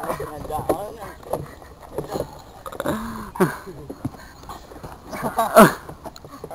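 Young men's voices laughing and exclaiming without clear words, ending in a loud falling yell about five and a half seconds in.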